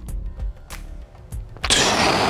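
A barbell deadlift done on a held breath: a few light knocks as the loaded bar comes off the floor, then near the end a loud, long rush of breath blown out through puffed cheeks.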